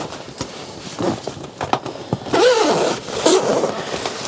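A large #10 YKK zipper on a backpack's clamshell back panel being pulled open in one long run, starting a little over halfway through. Before it come a few light knocks and rustles of the nylon pack and its straps being handled.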